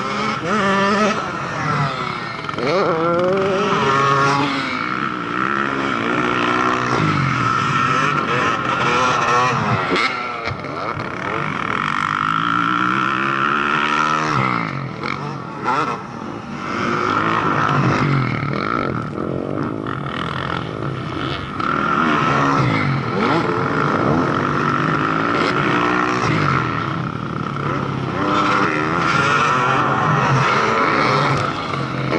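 Several motocross bikes revving hard and passing one after another, engine pitch climbing and dropping with throttle, over a steady high engine note from bikes farther around the track.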